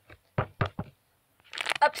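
Three quick knocks on a hard surface, about a fifth of a second apart, in the first second.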